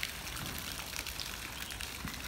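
Running water: a steady, even hiss.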